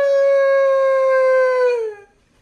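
A dog howling: one long, steady howl that drops in pitch and dies away near the end.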